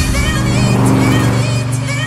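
Electronic music: a sustained low synth bass chord with wavering higher synth lines above it, easing off slightly near the end.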